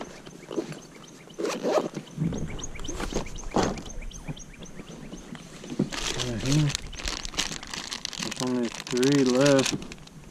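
Fishing tackle being handled in a kayak: scattered clicks and knocks, then denser rustling in the second half as a plastic bag of soft-plastic baits is pulled out and handled.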